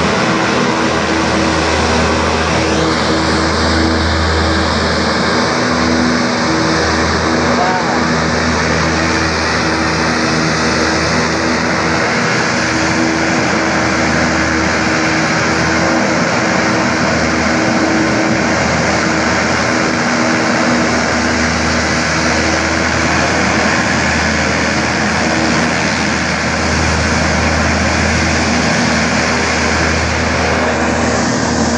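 US Navy LCAC (Landing Craft Air Cushion) hovercraft running at full power as it comes up out of the surf onto the beach: its gas turbines, propellers and lift fans make a loud, steady noise with a few steady low hums in it.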